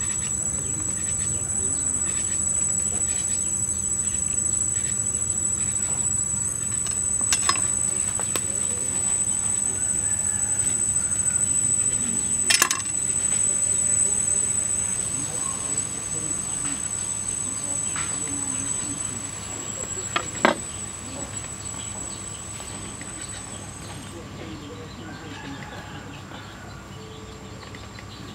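Insects chirring steadily in a high, continuous tone, with a few sharp knocks about a third, halfway and three-quarters of the way through.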